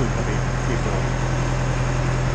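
Engine of a Schwing concrete pump trailer running steadily, giving an even low hum.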